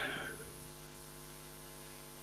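Faint steady electrical hum, low in pitch, with a short breathy noise fading out in the first half second.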